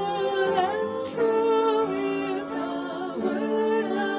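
Worship singers and acoustic guitar performing a slow hymn, the voices holding long notes that change every second or so.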